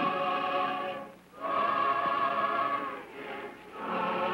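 Church choir singing a hymn in held chords, with short breaks between phrases about a second in and again near the end.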